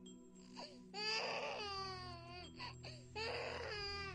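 A baby crying in two long wails, one about a second in and another near the end, each falling in pitch as it trails off, over steady background music.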